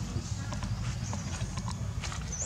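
A few light knocks and clicks from a monkey clambering on a motorbike's front mesh basket, over a steady low rumble.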